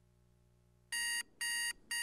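Digital alarm clock beeping: short, evenly repeated high beeps, about two and a half a second, starting about a second in.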